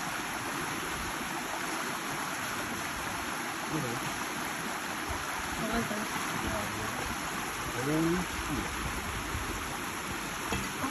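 Shallow creek water running steadily over rocks, an even rushing with no let-up; a voice speaks a few short words in the second half.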